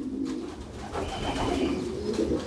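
Domestic pigeons cooing, low and continuous.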